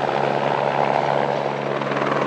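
Light skid-equipped helicopter flying overhead, its rotor and engine giving a steady drone with a constant low hum.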